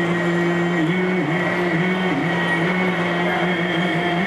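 A man's voice singing long, held notes in Sikh kirtan (Gurbani hymn) style, with small gliding dips and steps in pitch, over a steady harmonium accompaniment.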